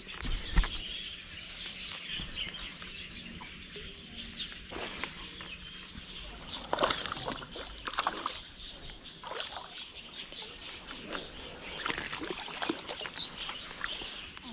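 A small bass splashing and thrashing at the water's surface as it is played and reeled in to the bank, in short bursts about halfway through and again near the end.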